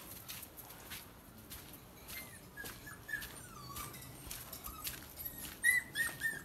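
A small puppy whimpering: faint, high-pitched short cries, some sliding down in pitch, repeated throughout.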